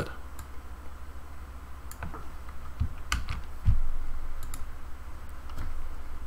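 Scattered clicks and taps of a computer keyboard and mouse, a few irregular keystrokes over several seconds, over a steady low hum.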